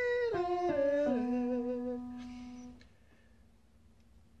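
A man's singing voice holds a high note, then steps down through lower notes over held keyboard notes. The sound fades out a little under three seconds in.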